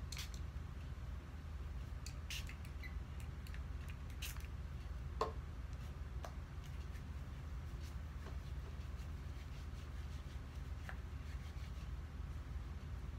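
Sticky slime being kneaded and squeezed into a ball by hand, giving scattered small sticky clicks and squishes, the loudest about five seconds in, over a low steady hum. The slime is still somewhat sticky and is being worked to reactivate it.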